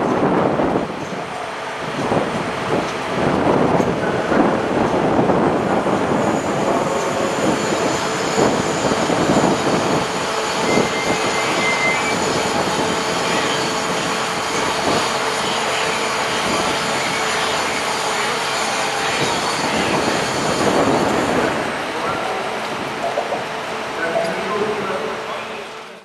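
A vehicle engine running steadily, with indistinct voices in the background.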